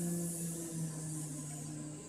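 A woman's voice holding one long buzzing "zzz", the letter Z's sound made as a honeybee's buzz, stopping near the end.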